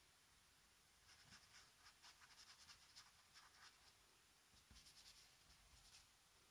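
Faint, scratchy strokes of a paintbrush dragging acrylic paint across paper, in quick runs from about a second in and again near the end.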